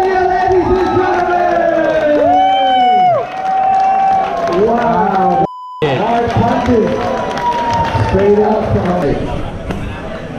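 Spectators at a Muay Thai fight shouting and cheering, with loud drawn-out yells close by. A short bleep tone cuts in about five and a half seconds in.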